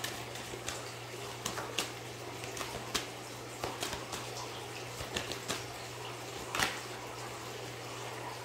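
A deck of oracle cards being shuffled and handled by hand: scattered soft taps and flicks of the cards, the loudest about six and a half seconds in.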